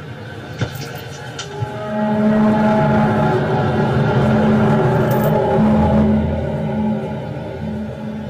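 A deep, droning, trumpet-like tone of the kind posted as a mysterious 'strange sound in the sky'. It swells in about two seconds in and holds steady for several seconds, easing slightly near the end.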